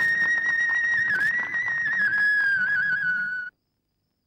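Film background music: a high, sustained, wavering melody line like a flute or whistle over a steady rhythmic beat. It cuts off abruptly about three and a half seconds in.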